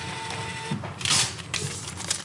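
Card payment terminal printing a receipt: a steady whir that stops a little under a second in, followed by a brief rasp.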